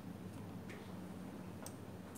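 Faint clicking at a computer, twice about a second apart, the second sharper, over a steady low hum.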